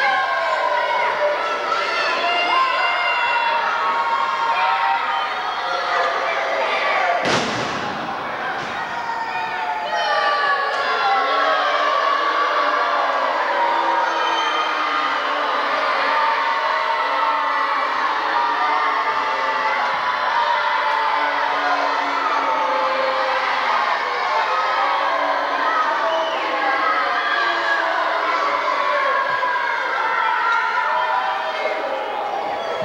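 Spectators in a wrestling crowd yelling and calling out over one another, with children's voices among them. About seven seconds in, a single heavy thud of a wrestler being slammed onto the ring mat.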